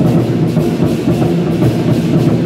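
A Taiwanese war-drum (zhangu) ensemble beating several large barrel drums together in fast, dense, loud drumming.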